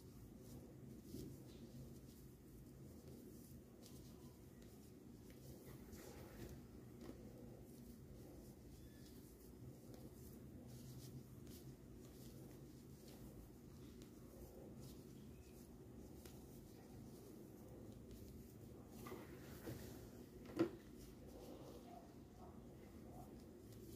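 Near silence: a low steady hum with faint, scattered ticks and rustles of a crochet hook working chunky t-shirt yarn, and one sharp click near the end.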